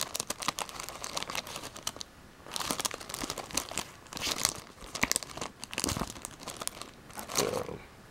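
Sealed sleeved Pokémon booster packs crinkling and clicking as a hand flips through a stack of them. The crinkling comes in irregular bursts, with a brief lull about two seconds in.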